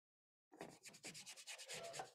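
Paintbrush scrubbing paint onto a stretched canvas in quick, short strokes, starting about half a second in.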